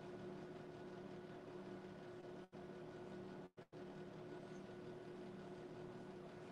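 Faint, steady room tone with a low electrical hum, cut by brief dropouts about two and a half and three and a half seconds in.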